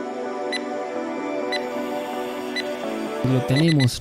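Calm background music with sustained synth tones, over which a countdown timer gives three short high beeps about a second apart, marking the last seconds of an exercise interval. A man's voice starts near the end.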